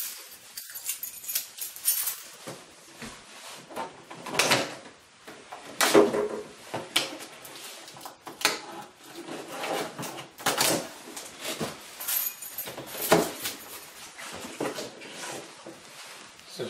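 Cardboard brake-rotor box being opened and its packaging handled: irregular rustling, scraping and knocking, with sharper clatters now and then.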